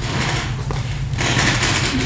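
A steady low hum under a rustling hiss that grows louder about a second in.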